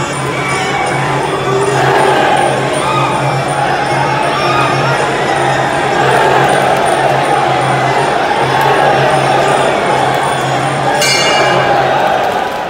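Live Muay Thai sarama ringside music: a pi java oboe melody over a steady drone and drums, with small ching cymbals clinking about three times a second, under crowd noise. About eleven seconds in a bell rings, marking the end of the round.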